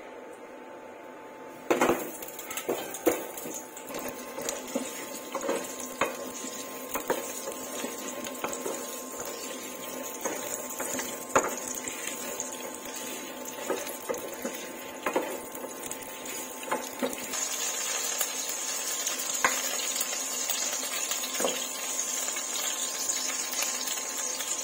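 Potato chunks tipped into a hot oiled frying pan with a clatter about two seconds in, then frying with a sizzle while a wooden spatula stirs them, knocking and scraping against the pan. The sizzle grows louder in the last third.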